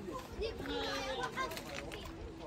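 Faint chatter of several overlapping voices, with no words made out.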